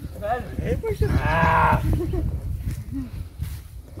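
A drawn-out, strongly pitched call lasting under a second, about a second in, between short bits of voice, over a steady low rumble.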